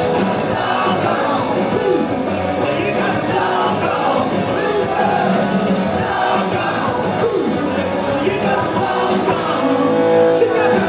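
Live rock band playing a fast, loud song: distorted electric guitars, bass and drums, with cymbal crashes about every second or two.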